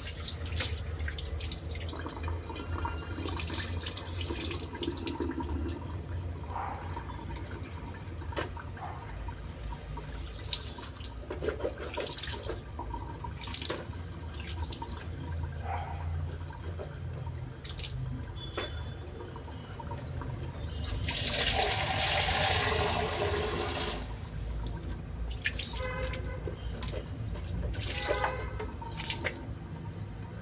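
Wet mouth sounds of a toothbrush working a mouthful of toothpaste foam on the tongue: scattered short wet clicks and squelches over a low steady hum. About two-thirds of the way in comes a louder rushing, splashing noise lasting a few seconds.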